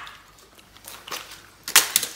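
A few short crinkling rustles of packaging being handled near the end, after a quiet start.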